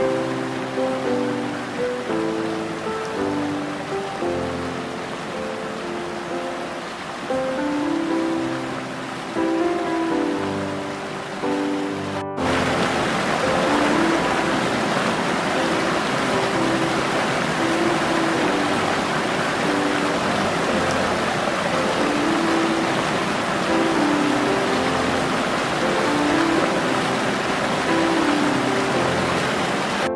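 Slow, calm relaxation music of soft sustained notes laid over a steady rush of flowing water. About twelve seconds in, the sound cuts out for an instant and the water comes back louder and brighter, with the music still under it.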